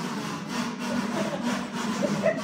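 A large group of kazoos buzzing together in a dense, raspy drone, holding a low note at a steady level.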